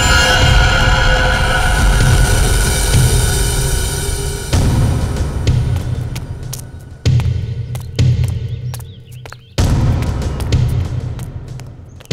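Suspenseful background music: a sustained chord over a low pulsing bass, then sudden low hits that each fade away, about four and a half, seven, eight and nine and a half seconds in.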